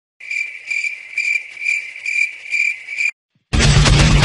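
Crickets chirping in a steady rhythm of about two chirps a second, cut off abruptly just after three seconds. After a short gap, loud guitar rock music kicks in near the end.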